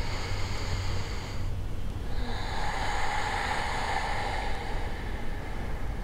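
A woman's deep breath in, then a long, audible breath out that begins about two seconds in.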